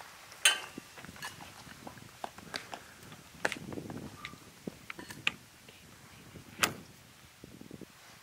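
Handling noises: scattered clicks, knocks and rustles, the sharpest about half a second in and again near the end.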